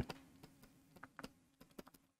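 A few faint, irregularly spaced clicks of a stylus tapping on a pen tablet as a word is handwritten.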